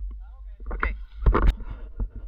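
Rustling and sharp knocks of handling noise from a player moving through forest undergrowth, with a low rumble on the microphone and a brief voice early on.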